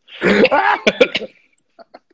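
A man's loud vocal outburst lasting about a second, then a couple of faint clicks near the end.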